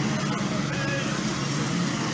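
Steady background noise of a shop floor: a low hum with faint, indistinct voices in the distance.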